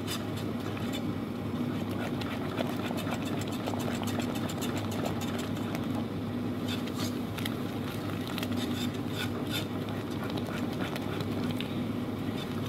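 A silicone-coated wire whisk stirring thick chocolate cream in a nonstick pot, with light clicks and scrapes of the wires against the pot. A steady low hum runs underneath.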